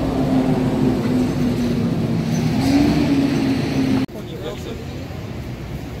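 A road vehicle's engine running steadily nearby, its pitch rising briefly about three seconds in, cut off suddenly about four seconds in and followed by quieter street noise.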